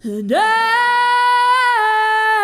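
A woman's singing voice swoops sharply up into a long, loud, high held note and sustains it, dipping slightly in pitch near the end.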